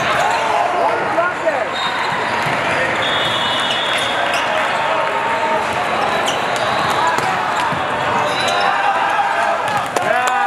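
Din of a crowded indoor volleyball hall: many voices from players and spectators across the courts, with sharp hits of volleyballs being played. A steady whistle blast sounds about three seconds in.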